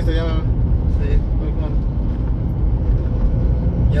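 Steady low rumble of a moving pickup truck heard from inside the cab: engine and road noise.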